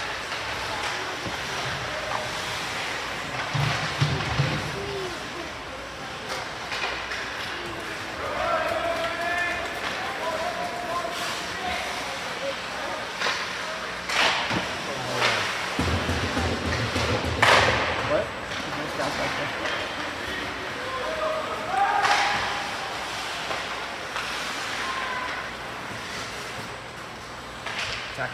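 Ice hockey play heard from the stands: sharp cracks of sticks and pucks striking the boards and glass, loudest in a cluster about halfway through, over players' and spectators' distant shouting and the rink's steady background noise.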